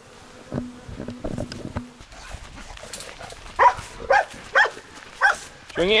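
Brief insect buzzing with a few clicks, then a dog barking four short times about half a second apart.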